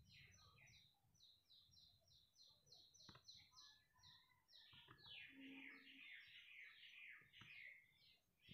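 Faint bird chirping: a quick run of repeated short high notes, several a second, that turns into rapid downward-sliding calls about halfway through.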